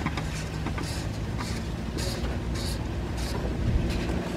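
A few short, irregular scraping rasps as the Panamera's plastic oil filter cap is turned against the aluminum filter housing and binds instead of threading in: the cap is sitting cocked sideways on the filter. A steady low hum underneath.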